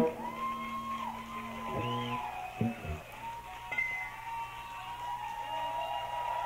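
Scattered whoops and whistles from a small live audience, with wavering, gliding pitches.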